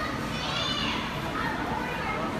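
Children's voices and background chatter, with one high voice rising and falling about half a second in.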